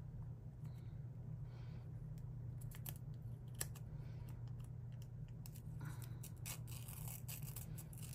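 Grid washi tape being worked and torn by hand: faint scattered crinkles and small ticks from the paper tape, which is tearing with difficulty, over a low steady hum.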